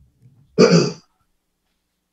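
A man's voice: one short vocal sound about half a second in, the word "now" or a throat-clear, then quiet.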